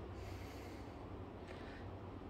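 Quiet room tone with soft breathing through the nose, a faint short breath about one and a half seconds in.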